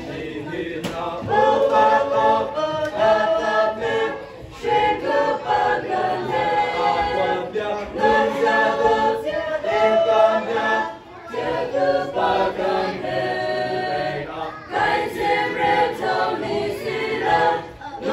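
Mixed choir of young men and women singing a hymn together, in phrases broken by short pauses for breath.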